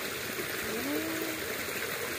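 Steady rushing of a small, muddy stream flowing past sandbags.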